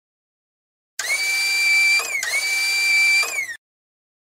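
Sound effect of a small electric motor whirring twice, like a power drill spun up, each run holding one high pitch and then winding down at its end. It cuts off sharply.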